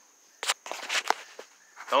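A few irregular soft scuffs and clicks from a person moving about with the camera, starting about half a second in after a moment of near quiet.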